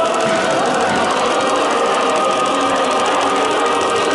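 Piped exhibit music with held, choir-like tones, with a fast, even ticking pulse over it.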